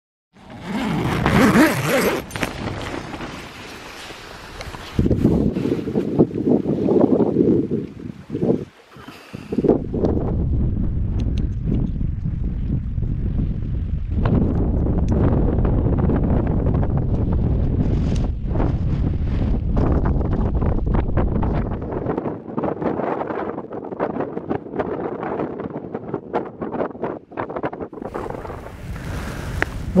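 Gusty wind rushing over the microphone, rising and falling, with its level changing abruptly several times.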